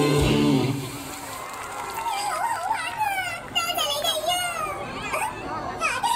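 Show music with guitar ends about a second in, followed by high-pitched voices with wavy, sing-song pitch.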